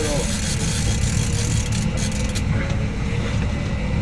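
Fishing boat's motor running steadily at trolling speed, a continuous low rumble. A hiss rides over it for the first two and a half seconds, then fades out.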